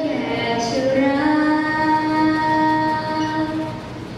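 Female voices singing a slow song with long held notes, the phrase ending and the sound dropping briefly near the end.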